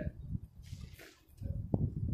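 Low, steady rumble of wind on the microphone, with a short rustle about a second in and a single sharp thump near the end.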